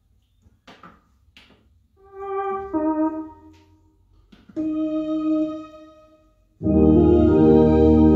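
Two-manual electronic organ: a few sharp clicks as stop tabs are set, then two short, softer held chords, and about six and a half seconds in a loud, full chord with deep bass as the hymn begins.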